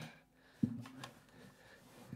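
Acoustic guitar being picked up and handled: a knock a little over half a second in, followed by a short ring that fades away.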